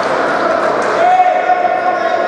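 Futsal ball bouncing on a sports-hall floor amid indistinct shouting voices, echoing in the large hall. A long held pitched note comes in about a second in.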